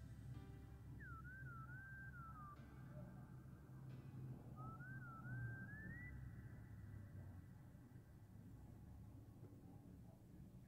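Near silence with a faint, high, single-voiced melody gliding between notes, like whistling, in two short phrases: one about a second in and one about five seconds in.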